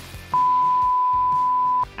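A single loud, steady beep, one pure high tone held for about a second and a half, over quieter background music.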